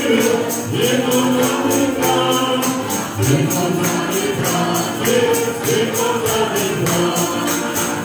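Group of voices singing a church song together, with a tambourine keeping a steady beat of about four jingles a second.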